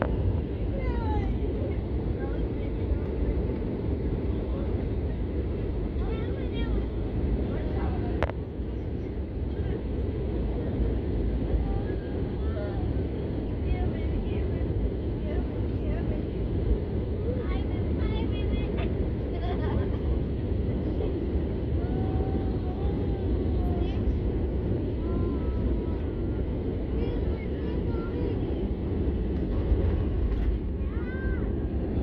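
Airliner cabin noise on final approach to landing: a steady, loud low rumble of jet engines and airflow heard from a window seat over the wing, with faint voices in the cabin.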